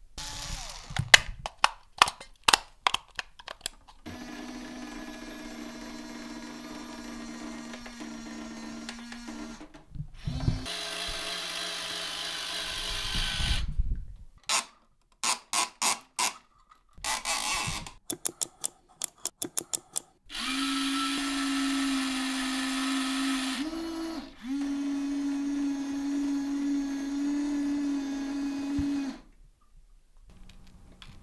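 Small electric toy motor overdriven on high voltage, running fast with a steady whine in several separate runs. The runs are broken by quick strings of clicks and abrupt cut-offs. In the last run the pitch briefly steps up, then drops back.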